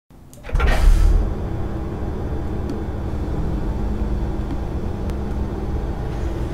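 A low, steady mechanical rumble with a faint hum, opening with a louder surge about half a second in.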